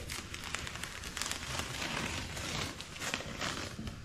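Green painter's tape being peeled slowly off a tire sidewall through still-tacky Flex Seal coating, giving a steady fine crackling.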